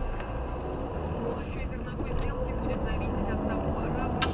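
Car engine and road noise heard from inside the cabin as the car gathers speed from walking pace, a steady low rumble, with faint radio talk underneath.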